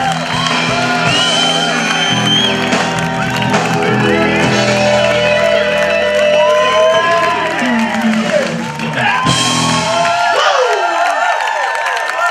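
Live blues-gospel band holding its closing chord while the crowd cheers and whoops. The band stops about ten seconds in and the crowd cheers on.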